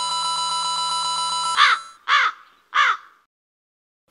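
A steady electronic tone for about a second and a half, then three crow caws about half a second apart, an edited-in comedic sound effect.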